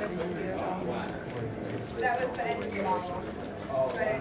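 Background chatter of several people in a busy pool room, with scattered sharp clicks of pool balls striking.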